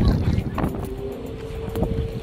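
Wind rumbling on the microphone, strongest in the first half second and then easing, with a faint steady tone underneath from about half a second in.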